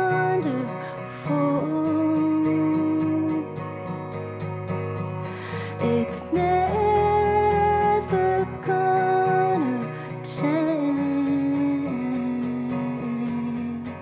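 Live acoustic band music: acoustic guitar playing under a held melody line whose notes slide at their ends, with low sustained bass notes underneath.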